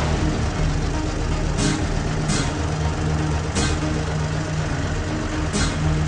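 A truck's diesel engine idling steadily, with a few brief hisses over it.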